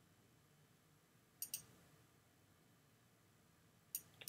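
Computer mouse clicking: two quick pairs of clicks, about a second and a half in and again near the end, over near silence.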